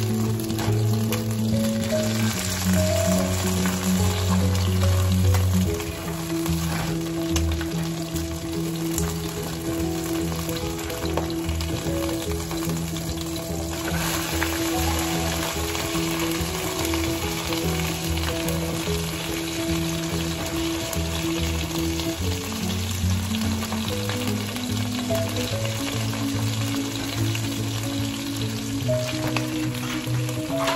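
Food sizzling in hot oil in a skillet as it is stirred, a steady frying hiss. Background music with held low notes plays under it.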